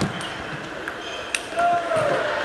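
Table tennis rally: a few sharp clicks of the ball striking the bats and the table. A voice calls out in a held, rising shout near the end.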